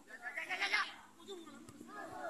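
A short, high, wavering call, lasting about half a second and starting just after the beginning, over the voices of spectators talking.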